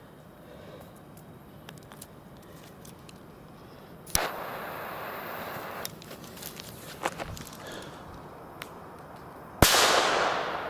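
Fuse of a Nico A-Böller firecracker catching with a sudden hiss about four seconds in and then fizzing more quietly, before the firecracker goes off with a single loud bang near the end, its echo dying away.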